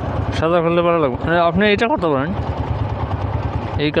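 Single-cylinder motorcycle engine idling at standstill with a steady low pulse, under a man's voice speaking for about two seconds. From about halfway in, only the idle is heard.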